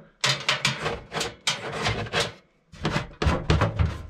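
Sheet-metal RV furnace being pushed and wiggled back into its cabinet opening: a string of irregular scrapes and knocks of metal against the surround, with a short pause past the middle.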